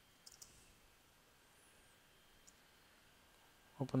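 Faint computer clicks: two quick clicks close together, then a single softer click about two seconds later.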